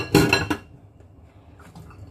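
Kitchenware clattering: a quick run of knocks and rattles with a light ring in the first half-second as a plate and a metal cooker pot are handled, then only soft handling noise.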